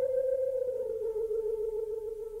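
Instrumental music: a single long held note, sinking slightly in pitch and slowly fading.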